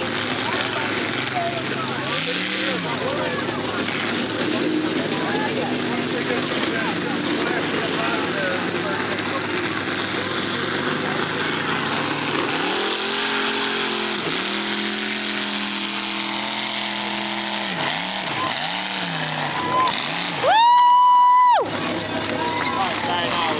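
A big mud-bog truck engine revs up and down as the truck churns through the mud pit, over steady crowd chatter. Near the end, a loud high-pitched steady tone sounds for about a second.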